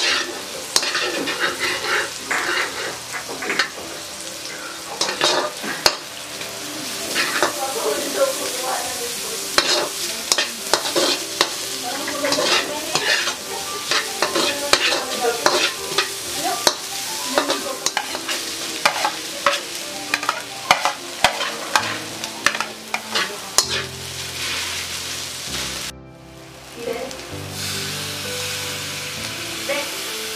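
A slotted metal spatula scraping and clanking against a wok in quick irregular strokes while chopped onion and garlic fry in oil with a steady sizzle. The stirring thins out near the end.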